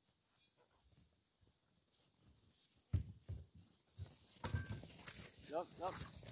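Low thuds and crunching in snow as the dog sled is readied, followed near the end by Siberian huskies yelping, the excited calls of sled dogs about to set off.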